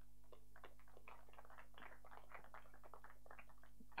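Faint, distant audience applause over a steady low electrical hum.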